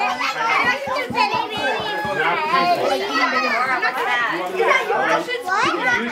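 Overlapping chatter of several voices, mostly high children's voices, talking and exclaiming over one another throughout.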